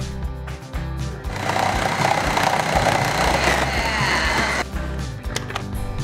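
Vitamix food processor attachment on its motor base running for about three seconds, slicing pizza toppings, over background music.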